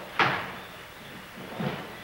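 Sounds of a karate kata on a wooden dojo floor: a sharp snap about a quarter second in, ringing briefly in the room, then a softer thump around a second and a half in.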